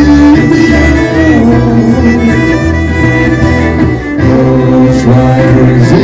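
Live country band playing: fiddle over electric and acoustic guitars and bass guitar, with a brief drop in loudness about four seconds in.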